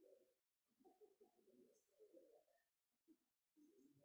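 Near silence: faint, muffled low sounds come and go, broken by short gaps of dead silence.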